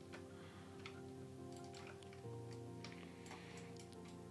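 Faint background music of held, sustained chords that change about two seconds in, with a scatter of light clicks from a computer mouse as edges are selected.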